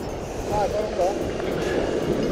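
Steady wind and sea wash against a rocky shore ledge, with a brief voice sound about half a second to a second in.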